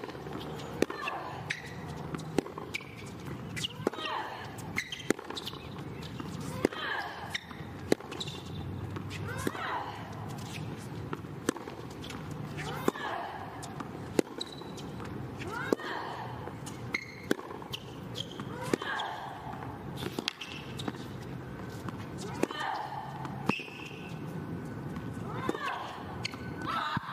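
Tennis rally on a hard court: the ball is struck by rackets and bounces about once a second, sharp and sudden each time. A player's short falling grunt comes with many of the shots.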